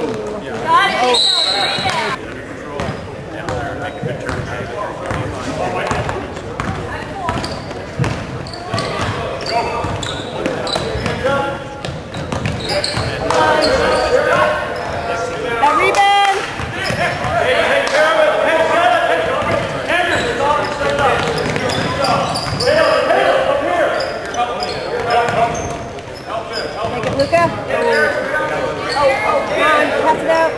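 A basketball bouncing and being dribbled on a hardwood gym floor during a game, repeated knocks, mixed with shouts and chatter from players and spectators in a large gym.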